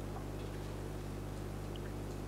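A pause in speech holding only a steady low electrical hum with faint hiss on the audio line.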